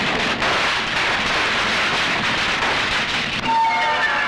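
Film sound effect of a car explosion and the burning wreck: a loud, continuous rush of blast and fire noise. About three and a half seconds in, background music with long held tones takes over.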